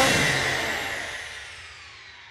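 Title-card sound effect for a TV programme: the tail of a musical hit fading away, its tones sliding steadily downward in pitch.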